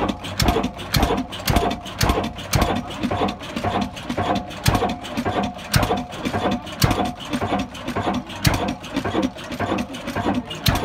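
Old Ruston stationary diesel engine running at a steady speed, with a slow, even beat of heavy knocks.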